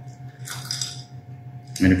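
Quiet commercial-kitchen room tone with a steady hum, and a faint brief clink or rustle about half a second in. A man starts speaking near the end.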